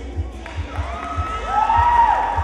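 Audience members shouting and whooping for a contestant, with a long high shout building in the second half, over background music with a steady low beat.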